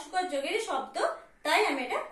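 Speech only: a woman speaking Bengali in short phrases.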